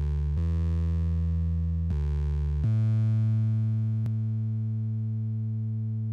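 Electronic music: low, sustained synthesizer tones, each held for a second or more and stepping to a new pitch a few times, the last note slowly fading. A brief click sounds about four seconds in.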